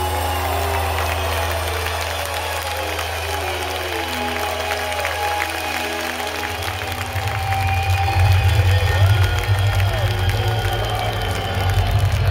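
A live rock band holding a final low chord at the end of a song over a cheering, applauding crowd. About halfway through, the low end turns louder and rougher as the band and the crowd swell.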